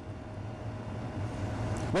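Low, steady background rumble with a faint steady hum, slowly growing louder across the pause; a man's voice starts again at the very end.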